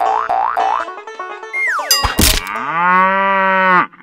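Cartoon sound effects after a short plucked banjo tune: a falling whistle, a thud about two seconds in, then one long cartoon cow moo that rises and then holds steady before cutting off.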